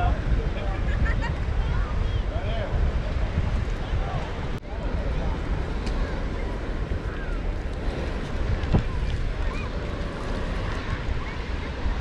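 Wind buffeting the microphone with a heavy, steady low rumble, over faint distant voices.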